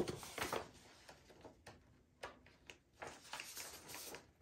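Faint handling noises as a small jar of mica powder and sheets of paper are handled: a few soft taps and brief rustles with quiet gaps between, more of them near the end.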